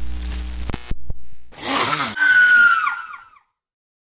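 Horror sound effects: a low electronic drone broken by a few sharp clicks, then a groaning growl that rises into a high scream bending downward and echoing away, cut off suddenly about three and a half seconds in.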